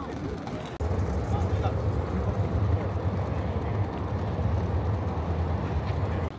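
Street traffic with a steady low vehicle engine rumble that comes in suddenly about a second in and cuts off near the end, under the chatter of passers-by.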